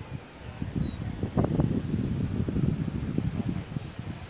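Wind buffeting the microphone in uneven gusts, stronger from about a second in, with one short, high, falling chirp near the start.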